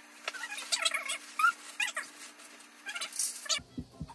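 A toddler whimpering and squealing in short, high, wavering sounds, among clinks of dishes and rustling at a table. It all cuts off shortly before the end.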